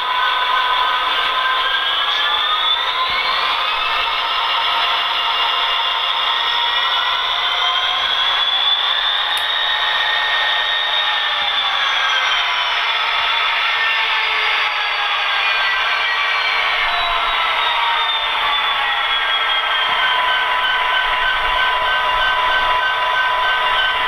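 Soundtraxx Tsunami 1 sound decoder in an HO-scale Athearn Genesis SD70, playing diesel locomotive engine sound through the model's small speaker as the model runs. The engine sound climbs in pitch a couple of seconds in, holds, then winds back down to a steady idle-like drone.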